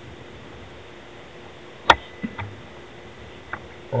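A single sharp click about two seconds in, followed by a few fainter ticks, over a quiet steady hiss.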